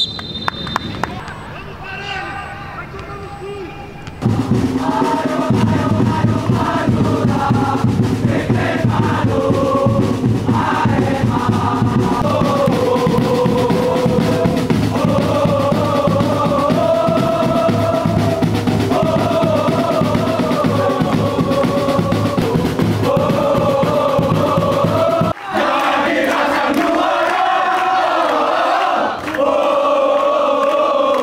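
A crowd of football supporters chanting and singing in unison over a steady drum beat, starting about four seconds in. The drum drops out about 25 seconds in, and the singing carries on.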